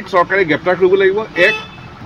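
A man speaking to reporters, pausing briefly near the end.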